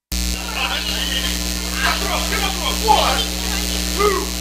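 Steady electrical mains hum in the audio feed, cutting in suddenly from dead silence right at the start, with faint voices underneath. It is the sign of a faulty connection in the sound feed.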